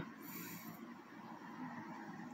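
Quiet room tone: a faint, steady background hiss with no distinct events.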